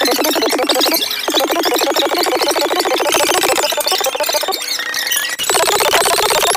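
A woman's voice played back greatly sped up, so high-pitched and squeaky that no words can be made out, coming in bursts of one to two seconds with short pauses between them.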